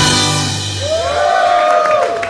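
A blues band's closing hit and final chord ringing out on electric guitar, bass and drums, fading within about a second. Over the end of it, a long pitched shout rises and then falls, about halfway through.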